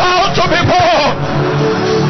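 A raised voice over sustained background music: the voice sounds in the first second, then held music notes carry on alone.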